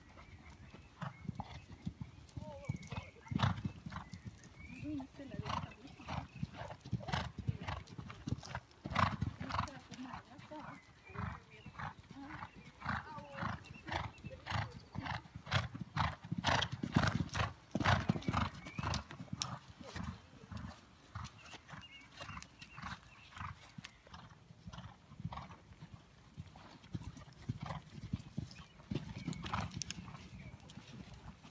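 Horses' hoofbeats on sand arena footing, a run of rhythmic thuds that grows louder and denser through the middle as a horse passes close, then fades again.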